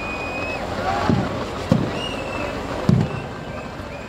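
Fireworks going off: three sharp bangs about a second, a second and a half and three seconds in, over the steady noise of a large outdoor crowd, with a few brief high whistles.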